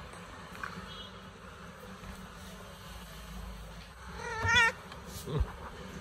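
Tabby cat meowing once about four seconds in: a short, slightly wavering call lasting about half a second.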